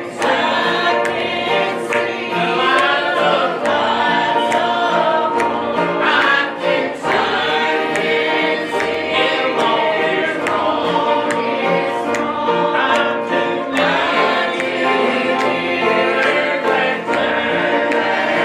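Small group of men's and women's voices singing a gospel song together, accompanied by a plucked five-string banjo and an electric bass guitar playing a steady beat.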